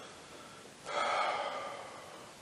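One audible breath from a person, a sudden rush of air about a second in that fades away over the following second.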